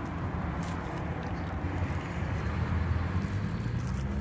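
Steady low rumble of outdoor urban background noise, with a low engine-like hum.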